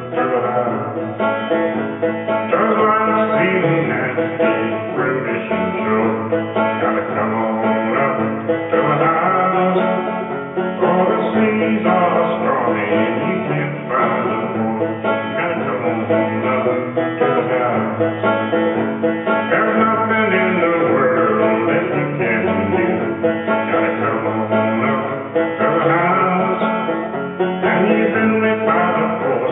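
Gold Tone banjitar, a six-string banjo, played solo without singing, carrying the melody of a slow folk song in a continuous run of notes.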